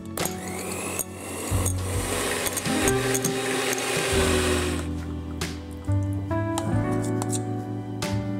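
Electric hand mixer running, its wire beaters creaming butter and sugar in a glass bowl; the motor spins up at the start with a rising whine and stops a little past halfway.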